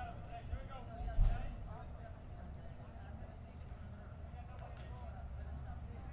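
Faint background voices and low hum of ballpark ambience picked up by the booth microphones, with a brief thump about a second in.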